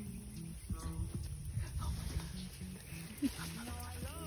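Background music with a steady, stepping low bass line, over soft scratching of hands digging in loose soil.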